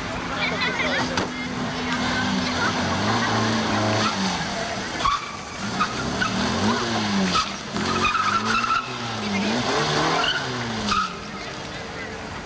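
Small hatchback car's engine revving up and down over and over as it is driven through tight turns, with a few short tyre squeals in the second half.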